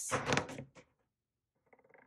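A small plastic die thrown onto a cutting mat, clattering in a quick run of knocks in the first second as it tumbles, then a few faint ticks near the end as it comes to rest.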